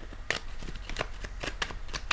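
Tarot cards being shuffled by hand off-camera: a run of light, irregular clicks and snaps, about four a second.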